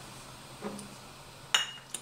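A glass bottle clinks sharply once against a glass mug about one and a half seconds in, with a brief ring, followed by a lighter tick just before the end. Under it is a quiet room with a faint low hum.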